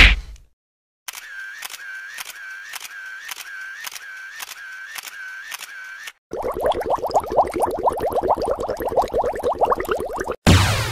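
A camera shutter sound effect clicking over and over, about two clicks a second for about five seconds. Before it, at the very start, comes a single loud punch hit. It is followed, for the last few seconds, by water bubbling.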